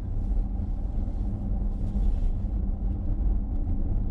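Steady low road and tyre rumble inside the cabin of a Mercedes-Benz EQC 400 electric SUV on the move.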